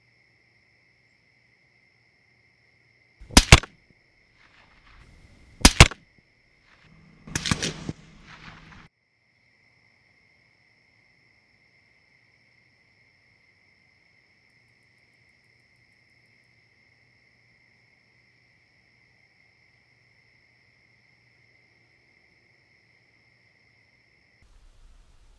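Two rifle shots about two and a half seconds apart, then a longer, rougher burst of sound lasting about a second and a half. A faint steady high-pitched whine runs underneath.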